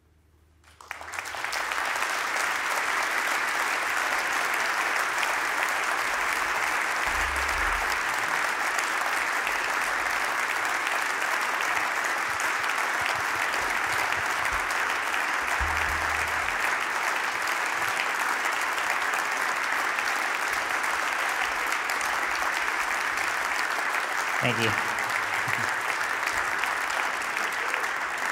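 Audience applauding at the end of a piece, starting about a second in after a brief hush and holding steady.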